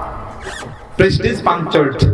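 A man's voice lecturing into a microphone, starting up again after a pause of about a second.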